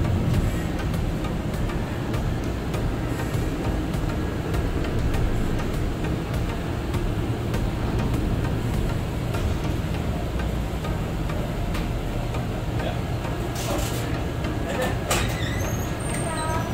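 Steady engine hum and rumble of a safari tour vehicle, heard from inside its passenger cabin.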